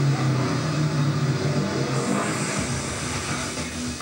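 Speedway motorcycle engines running, 500 cc single-cylinder methanol bikes, a steady engine note. A deeper, rougher rumble comes in about two and a half seconds in.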